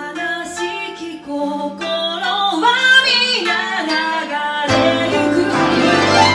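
A woman singing to a plucked twenty-five-string koto, the melody gliding between notes. About five seconds in, a piano comes in beneath with low notes and the music grows fuller and louder.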